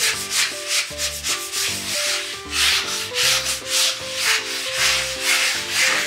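Sponge scrubbing a bathroom mirror in quick back-and-forth strokes, a few per second, working Sunpole acid toilet cleaner into years of built-up limescale on the glass.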